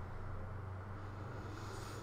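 Faint steady low hum of background ambience, with no distinct event.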